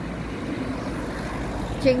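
Street ambience: a steady low rumble of road traffic. A voice begins speaking near the end.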